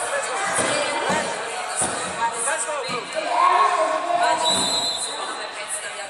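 Arena sound from a freestyle wrestling bout: several dull thuds in the first three seconds, among voices and hall noise.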